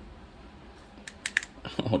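Nearly empty plastic dropper bottle of acrylic paint being squeezed hard: a quick run of sharp clicks about a second in as the last of the paint and air are forced out of the nozzle.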